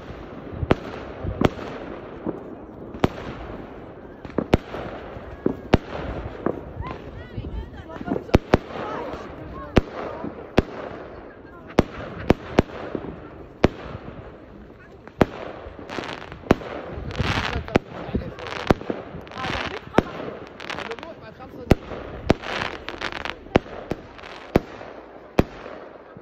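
Aerial fireworks going off: dozens of sharp bangs at irregular intervals, with louder, longer noisy bursts between them in the second half.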